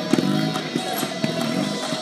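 Background music with guitar playing.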